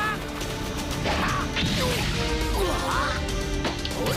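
Anime fight sound effects: crashing impacts as a body is smashed into breaking rock, with short strained vocal cries and music underneath.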